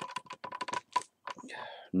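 Quick, irregular clicking of computer keyboard keys: about a dozen fast taps packed into the first second.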